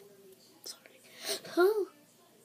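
A girl's voice: brief breathy whispered sounds, then a short voiced sound with a bending pitch in the second half, with no clear words.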